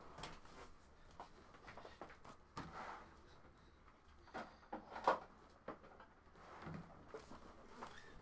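Faint handling noises of boxes being moved about on a table: scattered light knocks and scuffs, the loudest knock about five seconds in.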